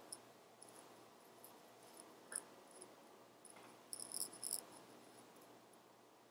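Faint, scattered rustling and soft crackling of hands handling a stuffed crocheted yarn cushion, with a small cluster of crackles about four seconds in.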